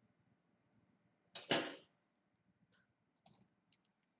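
A short swishing rustle about a second and a half in, then a few light, sharp clicks in the second half.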